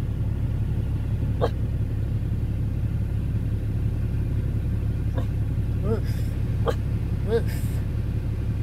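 A Blue Lacy dog giving about five short, soft woofs under his breath, one early on and the rest in the second half, over the steady low rumble of a vehicle idling.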